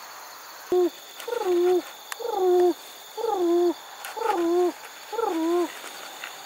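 Hand-blown pigeon call worked as a feeder call: six loud coos about a second apart, each a bent, wavering note.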